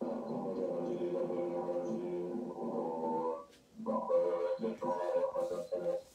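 A large assembly of Tibetan Buddhist monks chanting together, heard through a laptop's speakers so it sounds thin with little treble. The chant breaks off briefly about three and a half seconds in, then resumes in shorter phrases.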